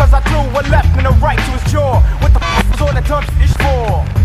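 Hip hop beat between rap lines: a heavy drum and bass groove with short sounds sliding down in pitch, repeated several times over it.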